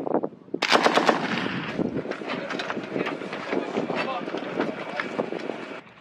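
M240 7.62 mm belt-fed machine gun firing one long continuous burst of rapid shots. The burst starts about half a second in and cuts off just before the end.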